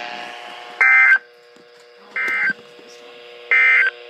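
NOAA Weather Radio SAME end-of-message data bursts, played through weather-radio receivers: three short buzzy digital tone bursts about a second apart over a faint steady hum. They mark the end of the Required Weekly Test broadcast.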